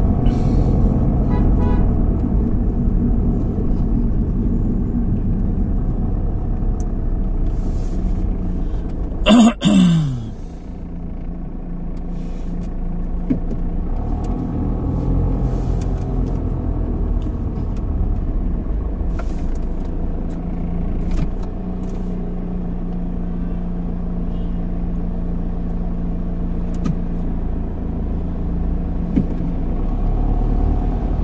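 Car running in slow city traffic, heard from inside the cabin as a steady low rumble of engine and road noise. About nine and a half seconds in there is a sudden loud noise whose pitch falls away over about a second.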